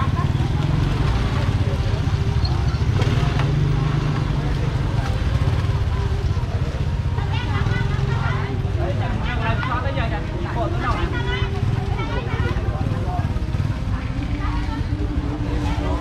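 Small motorbike and scooter engines running as they pass close by in street traffic, a steady low rumble, with people's voices talking in the middle and again near the end.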